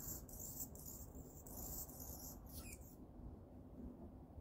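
A perched hummingbird giving a high, thin, scratchy song: a run of short buzzy notes lasting about three seconds, ending with a quick falling note. A steady low background hum lies under it.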